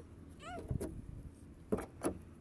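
A young child's short, high-pitched vocal squeak about half a second in, followed by a couple of light clicks from a car door lock and handle being worked with a key, and a brief clatter near the end.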